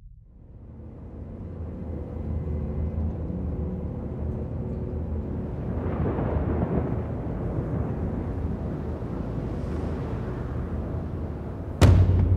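A deep rumbling drone from a film soundtrack swells up out of quiet over the first couple of seconds and holds, thickening around the middle. Just before the end, a single heavy boom strikes.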